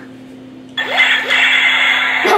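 Electronic shooting sound effect from a light-up toy gun, starting suddenly nearly a second in as a harsh, steady-pitched buzz with a few short rising chirps.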